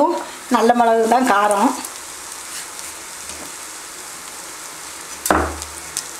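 A brief spoken phrase, then a steady sizzle from a pan of green gram frying in oil. A single sharp knock about five seconds in.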